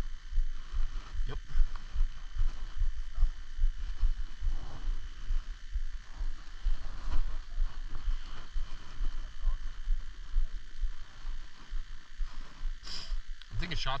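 Wind buffeting the microphone of a helmet-mounted action camera: a low, uneven rumble that keeps rising and falling, with faint voices over it.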